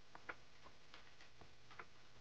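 Faint, irregularly spaced light clicks of a computer mouse against near silence, about half a dozen in two seconds, the one just after the start the most distinct.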